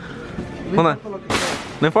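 Boxes of diapers dropped into a wire shopping cart: one short, sharp crash about one and a half seconds in.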